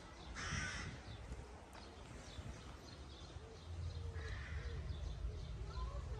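A bird gives two short, harsh calls about four seconds apart. Fainter chirping and a low steady rumble run underneath.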